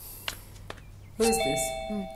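About a second in, a bell-like chime strikes and rings on, several clear tones held together, from the film's soundtrack. A short "hmm" is heard over it.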